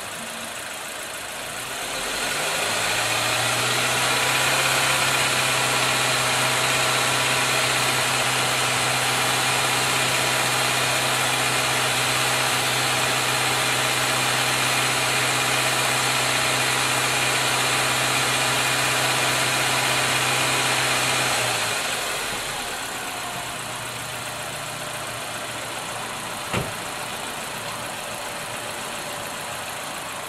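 Nissan QG four-cylinder petrol engine idling, then held at raised revs of about 2,000 rpm for around twenty seconds before dropping back to idle. A single sharp click sounds near the end.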